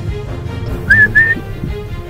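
Two short, loud whistled notes, each rising then leveling off, about a quarter-second apart near the middle, over steady background music.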